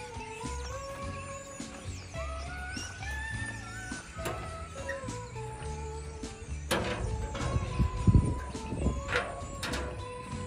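Background music: a melody of held, gliding notes over a repeating bass line. Near the end a louder low rumble rises under the music, about three-quarters of the way in.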